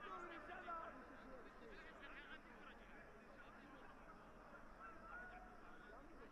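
Faint stadium ambience of distant voices and shouts from players and spectators at a football match, a little livelier in the first second.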